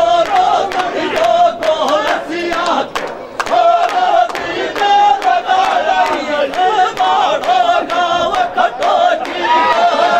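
Several men singing a Gurjar dhamal folk song loudly together in a chant-like, shouted style, over repeated strikes on a large hand-held frame drum.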